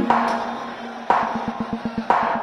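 Electronic background music: two sustained synth chord hits, the second about a second in, over a run of drum hits that speeds up into a build toward the end.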